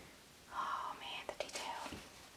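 Soft whispering starting about half a second in, with a few light crinkles of plastic wrapping being handled.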